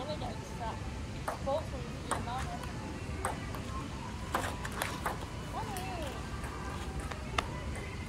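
A table tennis ball clicking off paddles and the table in a rally, a sharp tick every second or so at an uneven pace, with brief voices between shots.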